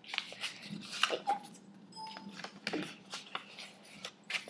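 A folded sheet of paper rustling and crinkling in quick, irregular rustles as it is handled and a fold is opened out by hand.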